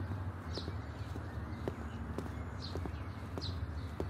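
Footsteps on pavement at a walking pace, about two steps a second, with a small bird repeating a short falling chirp over a steady low outdoor rumble.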